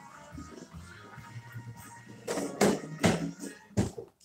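Hex dumbbells knocking as they are handled and set down on blocks beside a weight bench: four sharp knocks in quick succession in the second half.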